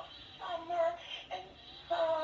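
Electronic Olaf toy singing in a cartoonish voice with music, in short sung phrases with a brief gap just before the end.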